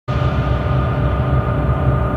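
Sustained electronic drone: steady held tones over a low bass rumble, unchanging throughout.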